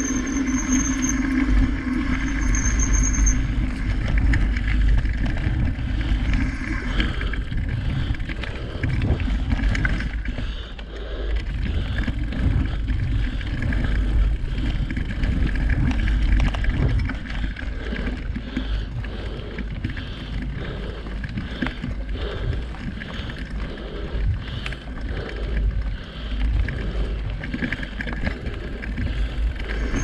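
Mountain bike riding a dirt forest singletrack: a continuous low rumble of wind on the handlebar-mounted microphone and knobby tyres rolling over packed dirt and leaves, with rattling from the bike.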